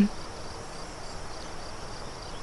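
Crickets trilling steadily in soft outdoor background ambience, with no other distinct sound.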